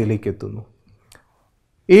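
A man's speaking voice trails off in the first half-second, followed by a pause of about a second with one faint click, and speech starts again near the end.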